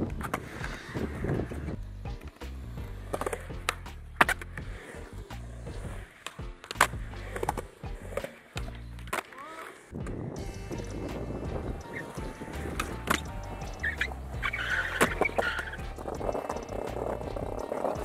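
Skateboard wheels rolling over smooth concrete, a continuous rumble, with a series of sharp clacks from the board hitting the ground and ledges at irregular intervals, the loudest about four seconds in.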